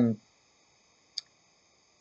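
A pause in a small quiet room: the end of a drawn-out "um" fades out, then near silence with a single short, faint click about a second in.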